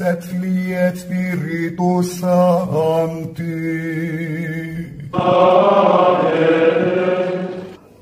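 Liturgical chant: a male voice chanting on one steady reciting pitch. About five seconds in it gives way to a louder, fuller held chord that lasts nearly three seconds and stops just before the end.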